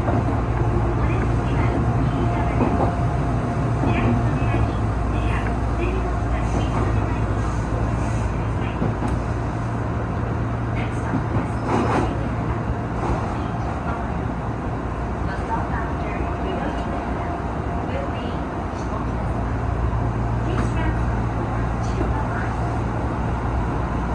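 Running noise of an Odakyu 8000-series electric train heard in its driver's cab: a steady low rumble of wheels on rail, with a faint steady whine at times and a single sharp click about halfway through.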